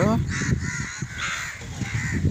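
Crows cawing: a few harsh caws during the first second and a half.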